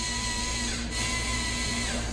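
Motor-driven LEGO toothpaste dispenser running, its gears and rubber rollers squeezing a toothpaste tube: a steady whine with a fast, even rattle.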